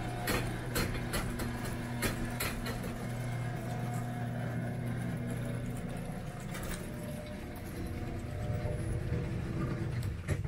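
A steady low engine-like hum, with scattered sharp clicks and knocks in the first couple of seconds. The hum fades about six seconds in, and a rougher low rumble builds near the end.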